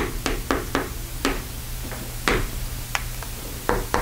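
Chalk writing on a chalkboard: about ten sharp, irregular taps and short strokes as an algebraic expression is written out.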